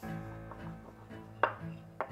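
A cleaver knocking several times on a wooden board while dumpling dough is pressed and cut, the sharpest knock about one and a half seconds in. Music with low held notes comes in at the start and plays under the knocks.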